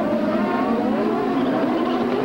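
A pack of IndyCar race cars' turbocharged V8 engines running together. Several engine notes overlap, each rising and falling in pitch as the cars work through a corner.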